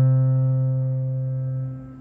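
A low piano chord, struck just before, held and slowly dying away, then released about two seconds in.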